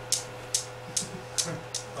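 Newton's cradle, its hanging steel balls clacking together: five sharp clicks, about two a second. One end ball swings in and strikes the row, and one ball pops out at the far end.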